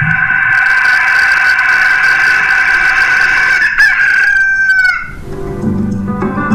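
A rooster crowing in one long drawn-out call that falls in pitch at the end, played as the sound effect of a radio bumper.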